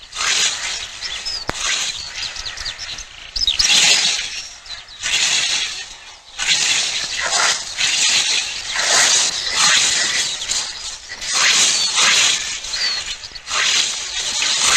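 Small birds chirping, short high chirps, over swells of hissing noise that come and go every second or two.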